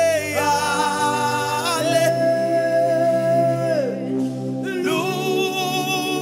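A man singing gospel worship into a microphone, holding long notes that glide between pitches, with a short break about four seconds in. Steady, sustained low chords run underneath.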